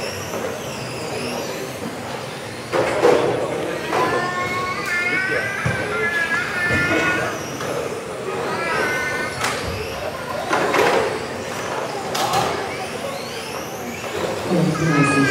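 Several electric RC touring cars racing: the whine of their motors rises and falls in pitch as they accelerate and brake, with a few sudden knocks.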